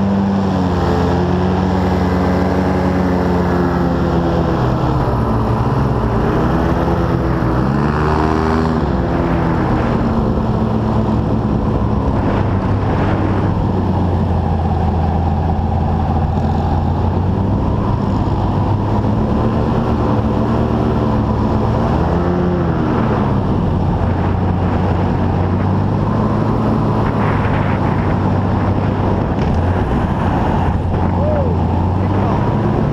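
Airboat engine and aircraft-style propeller running at speed, loud and continuous, its pitch swelling and dipping with the throttle a few times.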